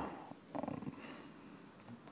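A pause in a man's speech in a quiet room, with a faint, short breath about half a second in.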